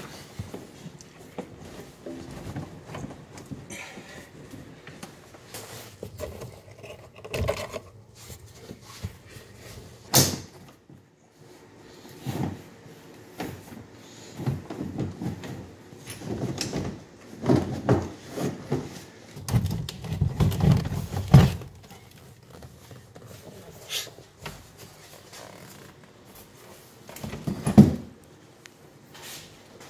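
A 1969 VW Beetle front seat being unlocked from its floor rails and slid out: intermittent metal clunks, clicks and scraping of the seat runners, with a sharp click about ten seconds in and a run of louder clunks a few seconds later.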